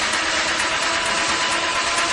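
Dark minimal techno: a thick, noisy, machine-like wash of sound with faint held notes underneath, steady in level.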